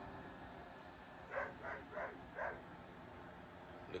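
Five-week-old pit bull puppy giving four short cries in quick succession, about a second and a half in.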